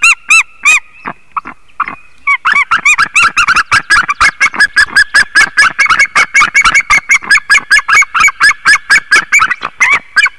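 A pair of white-tailed eagles calling at the nest: rapid series of loud, yelping calls, about six a second. The calling falters about a second in, then picks up again about two seconds in as both birds call over each other until the end.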